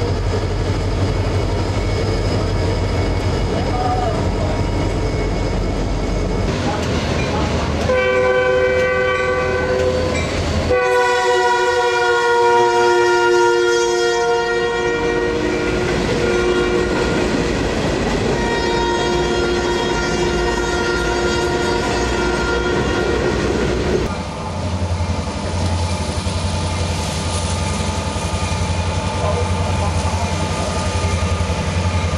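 Freight train diesel locomotives rumbling past, then a locomotive air horn sounding a long sustained chord for about sixteen seconds over the clatter of passing freight cars. Near the end the horn stops and a heavy diesel engine rumble takes over again.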